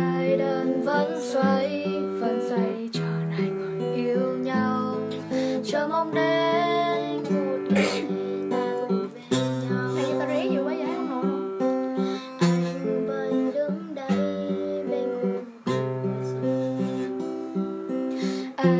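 A girl singing in Vietnamese while strumming chords on an acoustic guitar.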